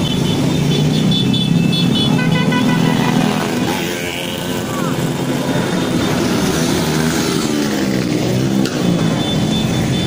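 A stream of small motorcycles passing close by with their engines running, and horns tooting several times over the engine noise.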